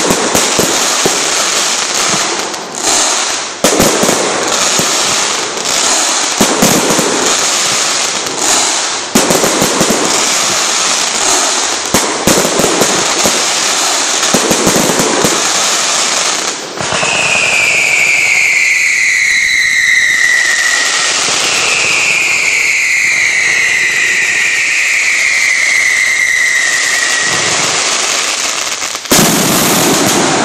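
Aerial fireworks bursting in rapid succession, a dense run of bangs and crackling for the first half. From about halfway, three long whistles fall in pitch one after another, and a single loud bang comes near the end.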